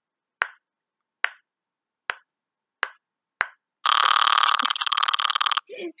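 Bubbles of a silicone pop-it fidget toy being pressed by a finger, one at a time: five short pops about two-thirds of a second apart. They are followed by a loud, steady high sound lasting under two seconds.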